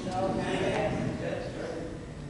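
Speech only: a man's voice, softer than the talk around it and fading away toward the end, with the sound of a large room.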